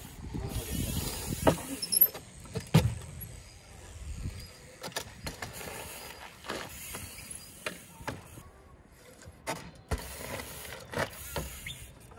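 Trials bike being ridden on gritty tarmac: tyre rolling noise with scattered sharp knocks and clicks from the bike as it is hopped and balanced. Near the end it hops up onto a wooden pallet.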